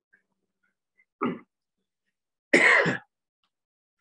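A person clearing their throat: a brief sound about a second in, then a louder, harsher one lasting about half a second.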